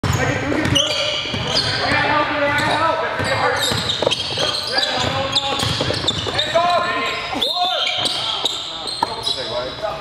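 Basketballs bouncing on a hardwood gym floor amid players' shouts and chatter, echoing in a large gymnasium.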